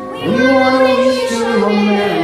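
Children's voices singing together as a virtual choir over a backing track, coming in loudly about a quarter second in on sustained notes that step down in pitch near the end.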